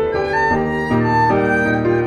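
Erhu and piano duet: the erhu plays a bowed melody of held notes over sustained piano chords, the notes changing about every half second.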